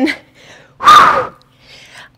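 A woman's single loud, breathy exhale, a "whew", about a second in, from the exertion of boxing cardio. A faint intake of breath follows near the end.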